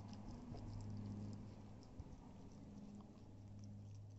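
Corgi puppy gnawing and licking a raw chicken leg: faint wet clicks and smacks, with one small knock about two seconds in, over a steady low hum.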